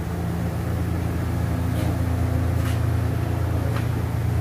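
Steady low mechanical hum of running machinery, such as ventilation, with a faint higher tone joining about a second in and dropping out near the end.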